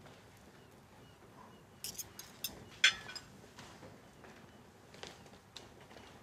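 Cutlery and glassware clinking at a dining table. A cluster of light clinks comes about two seconds in, the sharpest near three seconds, and a few fainter ticks come near the end.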